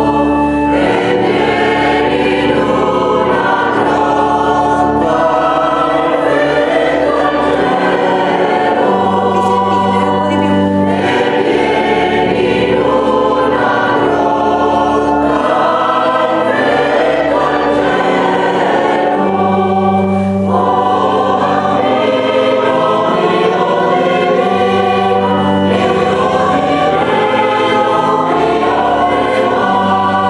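Mixed four-part choir of sopranos, altos, tenors and basses singing a sacred Christmas piece, with sustained organ bass notes held under the voices.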